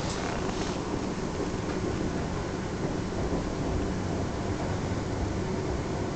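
Steady rumble of wheels and running gear heard inside the passenger saloon of a Class 444 electric train running slowly on the approach to a terminus, with a couple of brief high squeaks in the first second.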